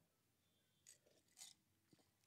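Near silence, broken by two faint, brief sounds about a second and a second and a half in, from a man drinking from a mug.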